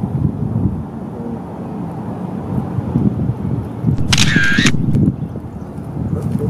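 Contax 645 medium-format film camera taking a shot about four seconds in: the shutter fires and the built-in motor winds the film on with a short whirring whine of about half a second.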